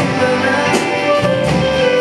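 Live band music: electric and acoustic guitars with bass and a drum kit, a beat struck about every three-quarters of a second under held notes.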